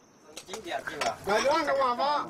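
A few sharp clinks of dishes and utensils, then voices talking from about a second in.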